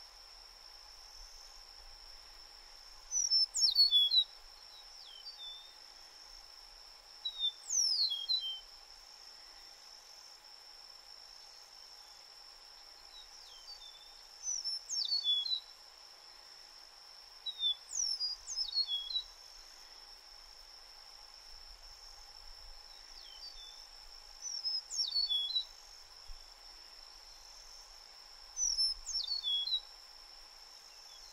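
Eastern meadowlark singing: six short songs of slurred, falling whistles, each about a second long, repeated every few seconds. A steady high-pitched hum runs under them.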